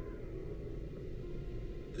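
A faint, steady low rumble of background ambience, without speech or clear music.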